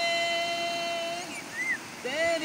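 A man singing, holding one long steady note for just over a second before breaking off; a brief high gliding sound follows near the end.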